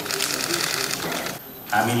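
Camera shutters clicking in rapid bursts during a press photo call, with faint voices under them; the clicking stops about a second and a half in, and a man starts speaking at a microphone near the end.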